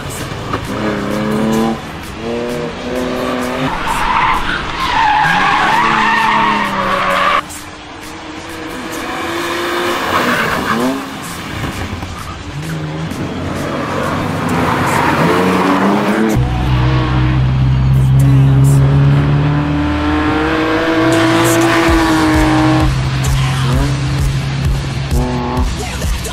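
A BMW E46 Touring's engine revving hard on a race track, its pitch repeatedly climbing and dropping back as it is driven flat out, with tyres squealing through the corners. Music with a steady bass line plays underneath in the second half.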